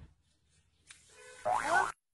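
A short cartoon-style 'boing' sound effect about one and a half seconds in, its pitch sliding and wobbling, cut off abruptly, after about a second of faint low background noise.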